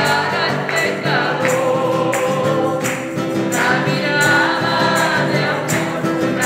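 A woman singing a Christian hymn, accompanying herself on a nylon-string classical guitar, with a steady beat of high percussive hits.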